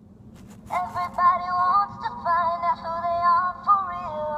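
A singing Barbie Rock 'n Royals Erika doll's small built-in speaker plays a sung melody in a thin, tinny voice that holds one note after another. It starts less than a second in, just after a few short clicks.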